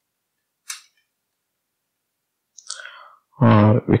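A single short, sharp click from a computer being worked, about a second in, against dead silence. Near the end there is a brief breath, then speech begins.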